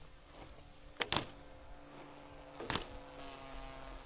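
BMX bike landing bunny hops on asphalt: a sharp double knock about a second in and another knock near three seconds. A faint steady hum runs underneath from about a second in.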